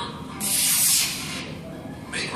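Model rocket motor lifting off, heard as a loud rushing hiss that starts about half a second in and fades within a second, played back from a video over a room's loudspeakers.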